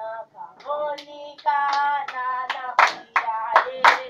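A church praise group singing in harmony, with hand claps coming in about halfway through at roughly three a second.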